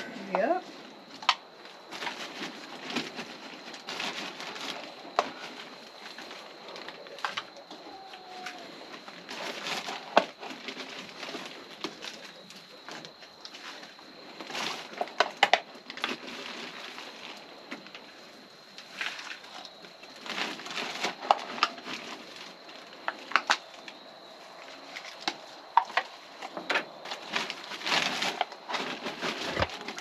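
Handling noises: irregular rustling, crinkling and light knocks from hands working among plastic buckets of potato plants and a plastic bag, over a faint steady high tone.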